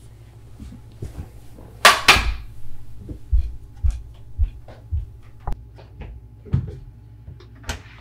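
Someone setting things down with a loud clatter about two seconds in, then walking across the floor in steady footsteps, about two a second, to a door, with a sharp click near the end.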